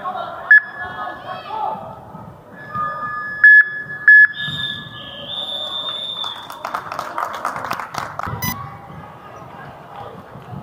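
Game sounds of a futsal match in a large hall: players' and spectators' voices, high squeaking tones with three sharp loud squeaks about half a second, three and a half and four seconds in, and a run of clicks and knocks from the ball and feet on the court about seven to eight seconds in.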